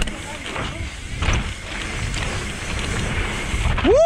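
Mountain bike tyres rumbling and knocking over a dusty dirt trail at speed, with wind buffeting the helmet-camera microphone. Near the end a short, loud call rises and falls in pitch.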